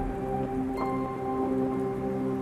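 Soft background score: a sustained held chord, with a bell-like note coming in about a second in.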